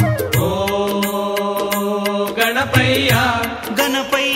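Devotional song to Ganesha: a singer holds a long drawn-out "O" over a steady drone and instrumental accompaniment with regular percussion strokes.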